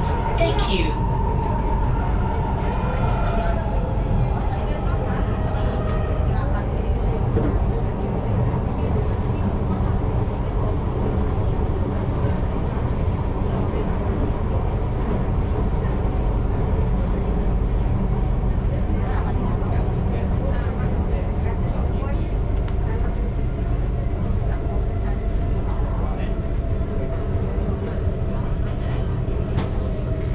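Singapore MRT train in motion, heard from inside the carriage: a steady low rumble of wheels on rail with a steady hum in several tones from the drive.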